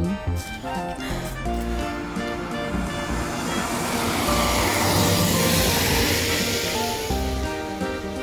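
Ukulele background music playing, with a van passing on a wet road: its tyre and engine noise swells to a peak about five seconds in, then fades.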